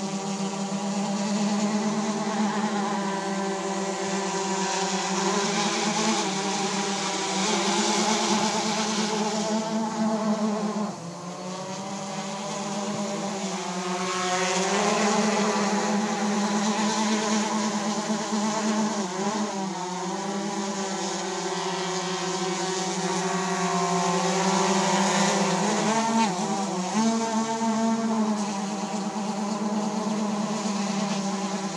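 Tarot X6 hexacopter's six motors and propellers droning in flight, a steady multi-toned hum whose pitch bends up and down several times as the motor speeds change. The level dips briefly about eleven seconds in.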